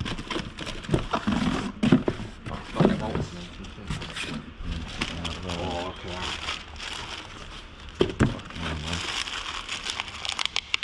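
Clear plastic bag crinkling and rustling against cardboard as a wrapped part is handled and pulled out of a box, with short crackles throughout.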